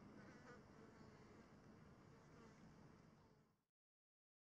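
Faint outdoor background with insects buzzing, fading out about three and a half seconds in to dead silence.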